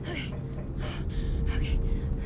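A woman gasping in fright, three or four sharp breaths, over a low rumble that grows louder and a steady humming note.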